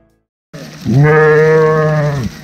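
A sheep bleating once: a single loud, long baa of about a second and a half that swells in and falls away at the end. The tail of a music fade-out ends just before it.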